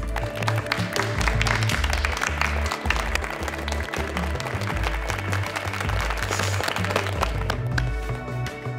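A small group of people applauding, with background music and its bass line running underneath.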